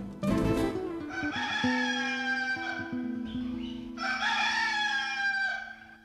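A rooster crowing twice, two long calls that slide slightly down in pitch, over the last notes of a nylon-string guitar ringing out after a final strum.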